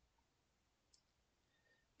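Near silence, with one faint click about a second in.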